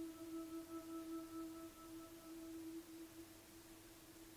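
Faint, soft relaxation music: one sustained, bell-like tone with a few quieter overtones, held steady and slowly fading.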